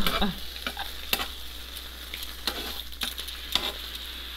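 Slices of vegan deli meat and buttered bread frying on a hot griddle with a steady sizzle, broken by a few sharp clicks of metal tongs against the griddle.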